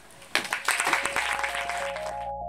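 Audience applause breaks out shortly after the start. About a second in, a synthesizer music track comes in under it.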